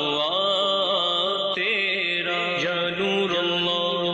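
A man's voice singing a slow devotional naat in long, wavering notes over sustained backing voices.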